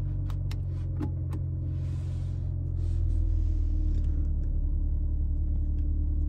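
The BMW M3's twin-turbo inline-six (S58) idling, heard from inside the cabin as a steady low hum that grows a little louder about halfway through. A few light clicks come in the first second and a half.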